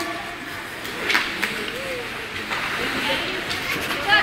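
Ice hockey rink sound: a steady hiss of skates on ice, a couple of sharp knocks of sticks and puck about a second in, and faint voices of spectators in the background.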